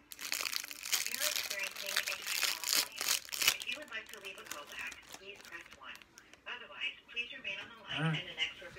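Thin plastic popsicle wrapper crinkling as it is peeled off, a rapid run of crackles for the first three and a half seconds or so.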